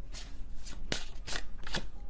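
A tarot deck being shuffled by hand: a string of quick card snaps and riffles, the sharpest about a second in.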